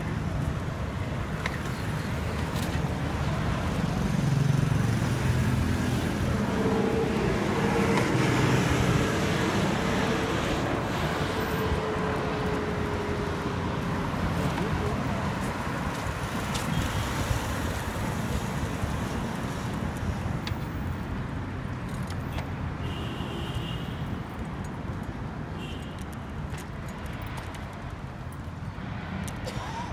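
Road traffic on a city street: a steady rush of car engines and tyres that grows louder a few seconds in and slowly fades toward the end.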